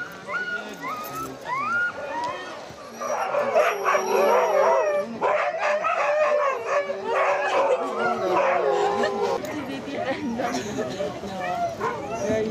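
Sled dogs whining with short rising yips, then from about three seconds in a loud chorus of many dogs howling and barking together for about six seconds, easing off near the end.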